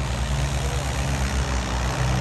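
John Deere 5310 tractor's diesel engine working hard under load, a steady low drone, as it drags a disc harrow down a dirt track.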